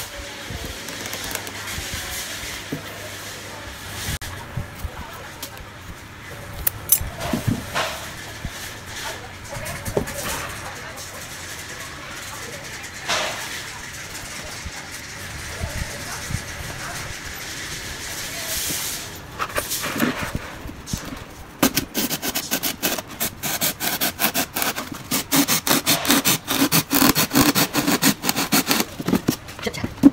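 A small blade cutting a hole in a polystyrene foam box lid. There are scattered single scraping strokes at first, then a fast, steady run of sawing strokes over the last several seconds.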